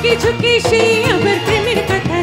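A woman singing live into a microphone with a band behind her, her voice sliding and bending between held notes over the accompaniment.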